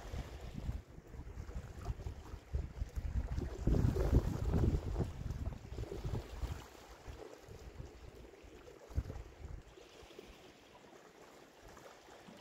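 Wind buffeting the microphone over the sea washing against rocks, with a louder stretch about four seconds in that eases off through the second half.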